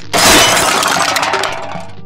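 Crash and shatter sound effect of a structure falling to pieces: a sudden loud smash just after the start, then clattering, breaking debris that fades over about a second and a half, with background music underneath.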